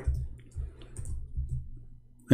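Soft, scattered clicks of a computer mouse and keyboard over an uneven low rumble picked up by the microphone.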